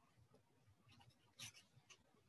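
Near silence: room tone, with a few faint, brief rustles about one and a half seconds in and near the end.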